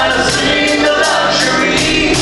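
Loud live concert music: a male singer performing a song over the band's backing, heard from the audience.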